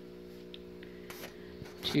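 Faint, steady electrical hum with a couple of faint ticks.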